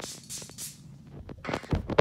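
Two quick hissing sprays from a spray bottle misting water, then knocks and rubbing from the camera being handled near the end.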